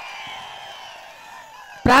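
Faint, distant voice with crowd noise, thin and without low end, its pitch rising and falling slowly. A man's voice comes back in loudly near the end.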